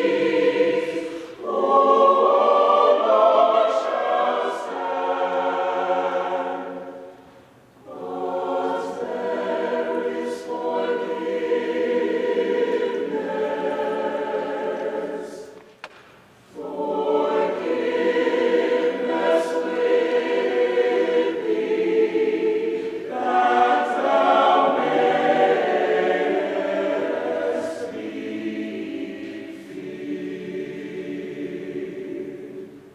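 Mixed-voice university choir singing together in sustained, full chords. The singing breaks off briefly twice, about seven and a half seconds in and again about sixteen seconds in, between phrases.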